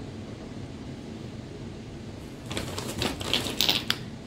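Plastic Bath & Body Works Wallflowers fragrance refill bulbs being handled: a quick, dense run of clicks and clatter in the second half, over the steady hum of an air conditioner.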